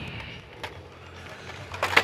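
Plastic blister packs of die-cast toy cars clicking and rustling faintly as a hand flips through them on a store peg, over a steady low hum, with a cluster of clicks near the end.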